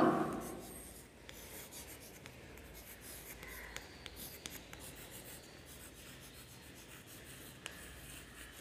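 White chalk writing on a green chalkboard: faint scratching with small taps as letters are stroked out.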